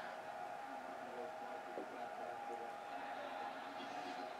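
Quiet room tone with a faint, steady high-pitched hum.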